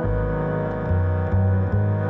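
Double bass played with the bow, holding sustained low notes. The pitch changes about a second in and twice more near the end.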